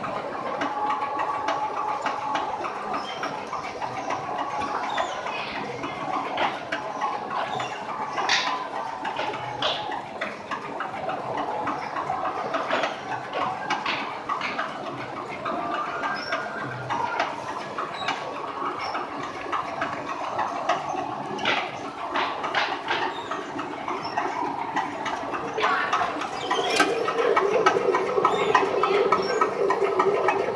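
Fabric inspection machine running, feeding cloth over its rollers under a measuring wheel, with scattered small clicks and squeaks. Near the end the sound gets louder, with a fast run of ticking close to the wheel's yardage counter.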